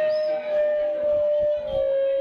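A wind instrument holds a long, loud, steady note that steps slightly lower near the end.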